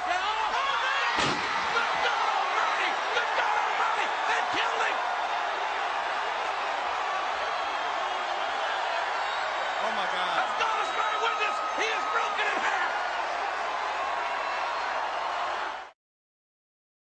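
Crowd and players at an American football game shouting and cheering, with a sharp slam about a second in and more scattered shouts later on. The sound cuts off suddenly at the end.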